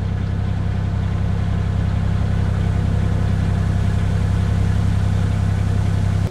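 A narrowboat's diesel engine running steadily underway, a deep even drone with no change in pace.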